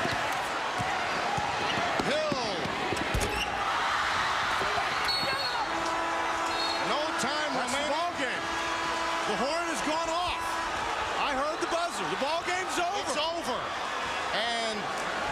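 Arena crowd noise with a basketball dribbled on a hardwood floor and sneakers squeaking. About six seconds in, the end-of-game horn sounds for about five seconds.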